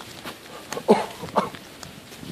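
Two short vocal calls about half a second apart, the first louder, each sliding in pitch.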